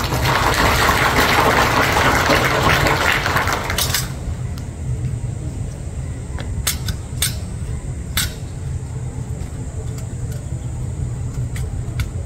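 A rushing noise for about the first four seconds, then a few sharp slaps and clicks of drill rifles being handled by the silent drill squad, over a steady low rumble.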